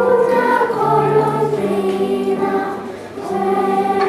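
Children's choir singing a phrase of held notes, easing off about three seconds in before the next phrase begins.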